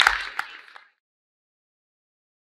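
Applause with sharp individual hand claps, dying away and cutting off abruptly within the first second.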